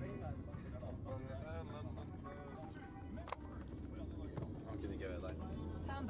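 Steady low drone of a car's cabin on the move, under voices and music.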